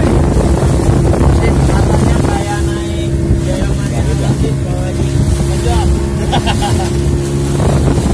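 Small outrigger boat's motor running steadily with a constant low hum while under way, with wind buffeting the microphone.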